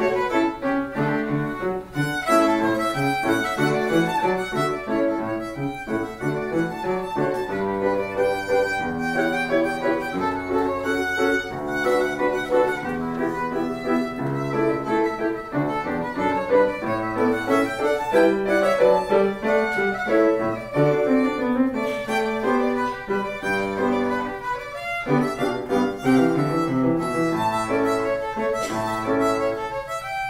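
Violin solo played with the bow, a continuous melody of quickly changing notes, with piano accompaniment adding low notes beneath.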